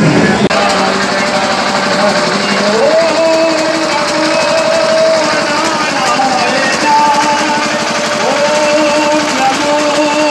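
Devotional procession music: long held notes that slide up into pitch about three seconds in and again near the end, over a fast rattling beat and the din of a crowd.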